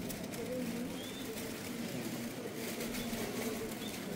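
Murmur of a crowd inside a large church hall, with indistinct wavering voices and faint shuffling.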